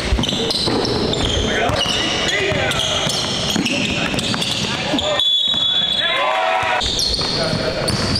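Live basketball game sound in a gym: a ball dribbling on the hardwood floor, sneakers squeaking and players' voices carrying through the hall.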